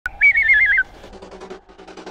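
Electronic intro sound effect: a short, loud whistle-like tone that trills rapidly between two close pitches and drops at its end. It is followed by a fainter, rapid glitchy stutter of about ten clicks a second over a low hum.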